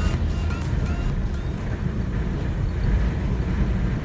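Steady low rumble of a car driving along a road, heard from inside the cabin, with background music fading out over the first two seconds.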